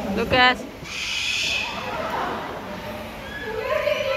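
A parrot calling: one short, loud pitched call about half a second in, followed by a harsher, hissing screech.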